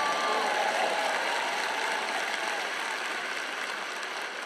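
Large audience applauding, the clapping slowly dying away.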